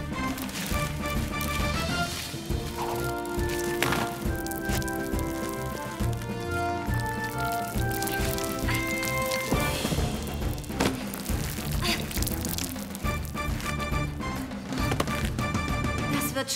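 Background score music with held, sustained notes over a continuous low accompaniment, with a few sharp clicks.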